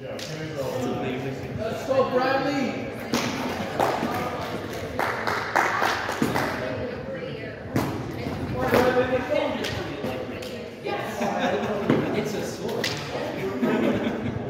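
Practice swords striking in a sparring bout: a string of sharp knocks and thuds as blades clash and land on padded gear, with voices talking underneath.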